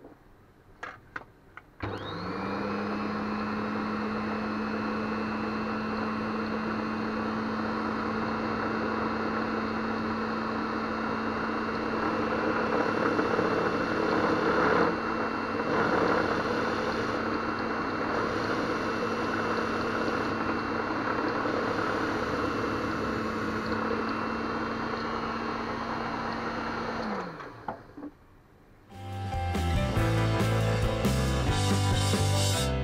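Small benchtop mill's spindle motor starting after a few clicks, running with a steady hum and a thin whine while a drill bit bores into a resin coaster. It grows louder through the middle as the bit cuts. It falls in pitch as it spins down a couple of seconds before the end.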